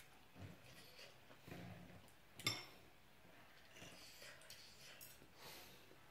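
A metal spoon clinks once, sharply, against the dishes about two and a half seconds in, amid faint soft sounds of eating; otherwise near silence.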